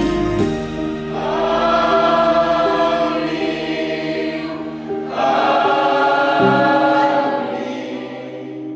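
Slow choral church music: voices sing two long, held phrases over sustained low chords, fading near the end.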